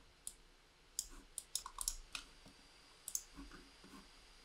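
Faint scattered clicks of a computer mouse and keyboard, some coming in quick runs of two or three.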